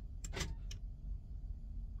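Power door locks of a Peterbilt truck cab engaging: three quick clicks within the first second, the middle one loudest, over a steady low hum.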